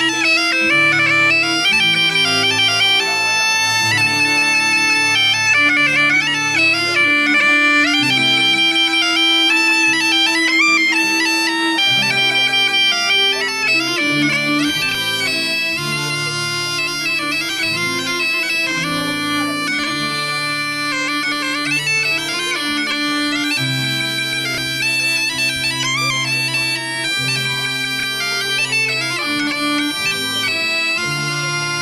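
Galician gaita (bagpipe) playing a tune over its drone, continuous throughout.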